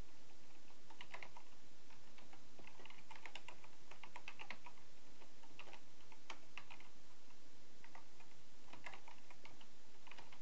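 Computer keyboard typing: short runs of quick keystrokes separated by brief pauses.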